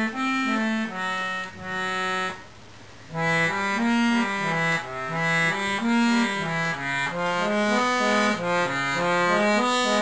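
Giulietti free-bass accordion played on its left-hand bass buttons alone: a bass line stepping up and down beneath sustained chord notes, on the chromatic C-system free bass. The playing breaks off for a moment about two and a half seconds in, then resumes.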